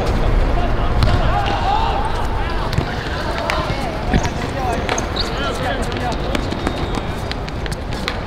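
Footballers shouting and calling to each other during play, over a steady low rumble, with a few sharp knocks of the ball being kicked.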